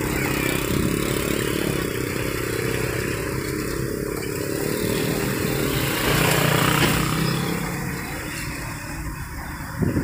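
Engine and road noise of a moving pickup truck heard from inside its cab, with street traffic around it. A louder engine hum swells about six seconds in and fades by about eight seconds.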